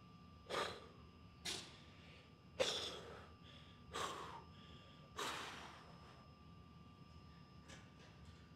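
A man's short, forceful breaths, five in about five seconds, taken while he flexes and holds bodybuilding poses, then quiet breathing for the last few seconds.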